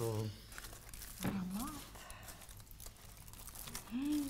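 Aluminium foil crinkling faintly as a foil-wrapped fish parcel is handled, with a short voice sound about a second in.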